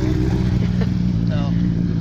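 Sport motorcycle engine running at low, steady revs as the bike rides slowly past.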